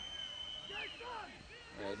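Referee's whistle blown once, a faint steady high tone lasting about a second that dips as it stops, halting play for a free kick. Faint shouts from players follow.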